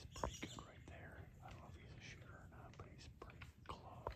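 A person whispering faintly, with a few sharp ticks and rustles; the loudest tick comes just after the start.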